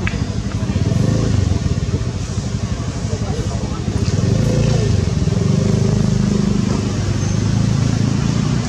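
Indistinct human voices, with a low motor-like drone running underneath.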